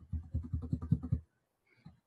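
Computer mouse scroll wheel turned in a quick run of soft ticks lasting about a second.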